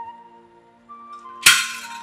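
Background film score of held tones fades low, then a single sudden loud crash, like something breaking, hits about one and a half seconds in and rings away quickly: a dramatic sound-effect sting.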